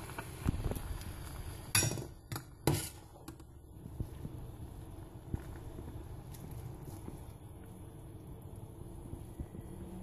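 A perforated metal ladle clinking against a stainless steel pot as boiled broccoli is scooped out: two louder clinks about two and three seconds in, then a few lighter taps. Beneath them runs the low steady sound of the pot's boiling water.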